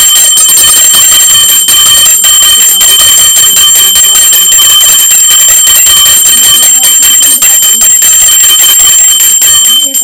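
Puja hand bell rung rapidly and without a break, a loud, steady, bright ringing that stops suddenly just before the end.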